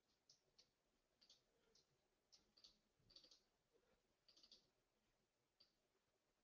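Near silence with a dozen or so faint, scattered computer mouse clicks.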